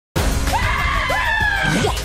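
Music with high-pitched voices screaming over it in long, gliding cries. It starts abruptly just after the beginning.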